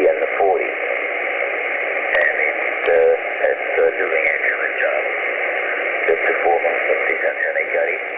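A distant amateur station's voice heard over shortwave single-sideband through an Icom 703 transceiver's speaker. The speech is thin and narrow-band, hard to make out, over a steady hiss of band noise.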